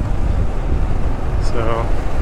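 Motorcycle cruising at steady road speed: a constant low rumble of engine and wind buffeting the bike-mounted microphone.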